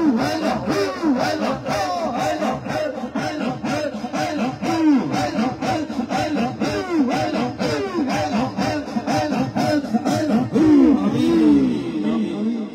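A group of men chanting a fast rhythmic zikr in unison: short repeated calls, each bending up and then down in pitch, driven along by a steady beat of breath.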